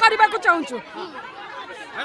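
Speech only: several voices talking at once in a crowd, loudest in the first second.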